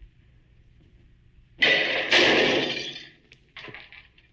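A loud crash about a second and a half in, in two bursts about half a second apart, dying away over about a second; a short fainter sound follows near the end.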